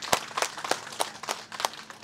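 Sparse, irregular hand clapping from a few audience members, several sharp claps a second.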